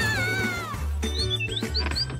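Cartoon bird calls over background music: one wavering call that falls away just under a second in, then a few short rising chirps. A steady bass line runs underneath.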